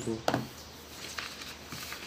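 A brief vocal sound near the start, then faint rustling and ticking of paper sheets being handled.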